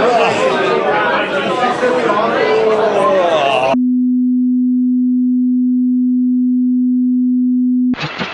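Crowd chatter in a hall for about the first three and a half seconds, cut off abruptly by a single steady, fairly low sine-wave test tone held for about four seconds.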